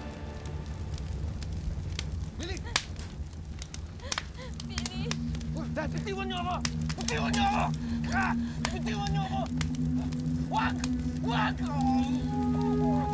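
Flames crackling with a low rumble, and a voice crying out several times in drawn-out wails. A steady low drone of dramatic score comes in about four seconds in.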